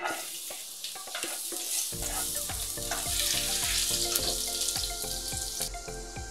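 Chopped garlic sizzling in hot cooking oil in a frying pan. The sizzle starts suddenly as the garlic is scraped in off a spatula, with small crackling clicks, and grows a little louder over the next few seconds.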